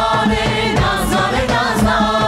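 Mixed choir and lead singers performing a traditional Armenian wedding song, backed by a steady drum beat.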